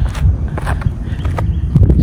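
Footsteps on asphalt with a few irregular steps, over wind rumbling on the microphone.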